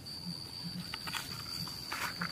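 A kitchen knife cutting small pieces over a cutting board, with a few light taps about a second in. Behind it, a steady high-pitched insect drone.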